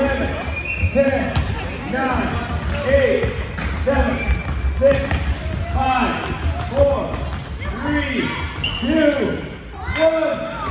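A basketball bouncing on a hardwood gym floor during play, with short repeated voice calls about once a second.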